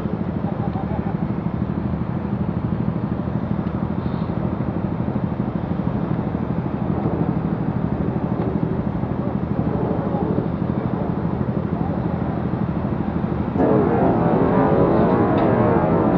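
Road traffic with a steady low engine hum, heard from a cyclist's helmet camera. About fourteen seconds in it suddenly gets louder and rougher.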